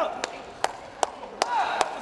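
Court shoes squeaking in short chirps on an indoor badminton court floor, with five sharp, evenly spaced knocks about 0.4 s apart through the middle.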